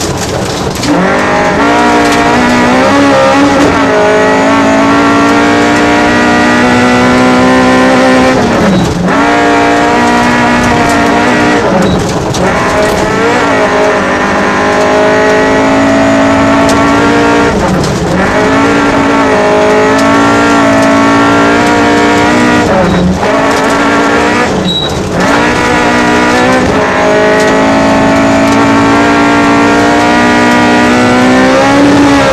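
Rally car engine heard from inside the cockpit, running hard at high revs the whole time. Its note drops sharply and climbs straight back several times, about a dozen seconds apart at first and then more often near the end.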